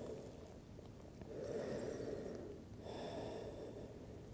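A woman breathing audibly close to the microphone while resting in a yoga pose: two faint breaths, a longer one a little over a second in and a shorter, airier one near the end.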